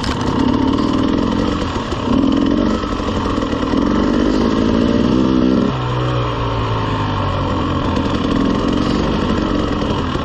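Dirt bike engine running at low trail speed, the throttle opening and closing; a little past halfway the revs drop to a lower steady note for a couple of seconds before picking up again.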